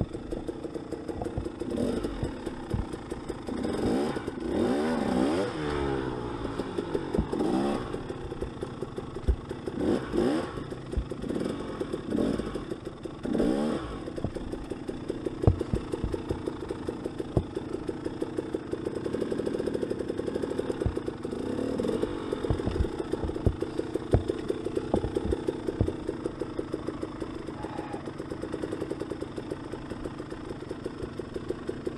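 Dirt bike engine running at low speed through a rocky creek bed, with several short bursts of throttle where the engine pitch rises and falls, the first few within the first 14 seconds and more around 20 seconds. Scattered knocks and clatter are heard as the bike goes over rocks.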